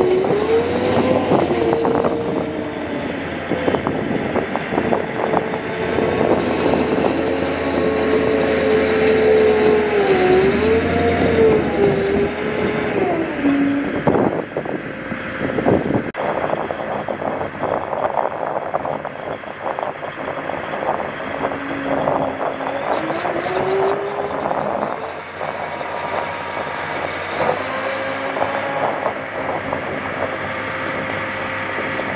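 An M270 MLRS tracked launcher running, with a whine that wavers up and down in pitch over the steady engine sound. Short clicks and knocks come throughout, thickest about halfway through.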